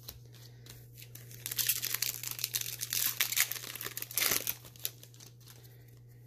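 Plastic-foil wrapper of a Magic: The Gathering booster pack crinkling and being torn open: a burst of crackly rustling and tearing starting about a second and a half in and lasting about three seconds, with a sharp rip near the end of it.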